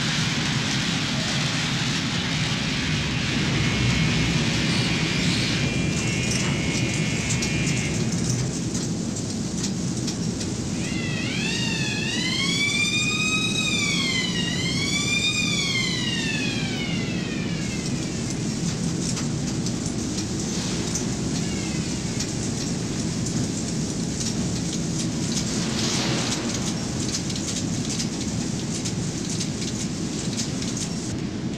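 Steelworks melt-shop noise: a loud, steady industrial rush and rumble while molten steel is poured from a ladle. About eleven seconds in, a high whine rises and falls twice over some six seconds.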